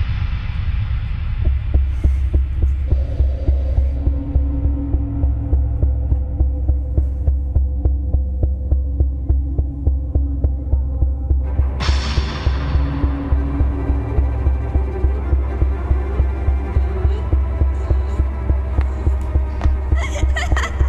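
Sound-design drone in a film soundtrack: a deep hum throbbing evenly about three times a second, like a racing heartbeat. About twelve seconds in, a harsher, hissing swell rises over it.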